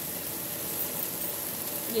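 Dried peas sizzling as they fry in ghee with ground spices in a pan, stirred with a spatula. The sizzle is a steady, even hiss.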